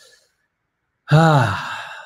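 A man's audible sigh about a second in: a voiced exhale that falls in pitch and trails off into breath, after a faint breath at the start.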